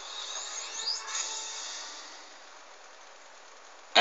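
Cartoon soundtrack playing from a television and picked up in the room: soft background music with a few short rising high tones about a second in, growing quieter after about two seconds.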